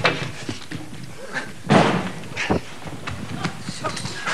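A few dull thumps and knocks on a stage as a thick rope is pulled loose, the strongest about two and a half seconds in, with a man's short 'oh' between them.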